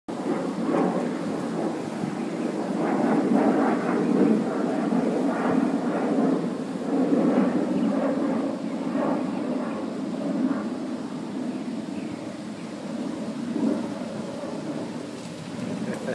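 Wind buffeting the microphone outdoors: an uneven noise that swells and fades in gusts throughout.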